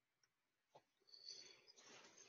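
Near silence: faint room tone with two faint clicks in the first second, then a faint scratchy noise from about halfway through.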